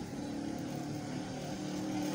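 A steady low mechanical hum, like an engine running, growing a little louder toward the end.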